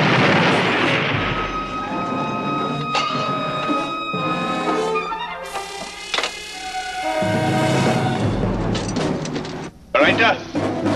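The noise of a shell explosion dies away over the first second or so, then a dramatic brass-led orchestral film score plays, with a couple of sharp hits along the way.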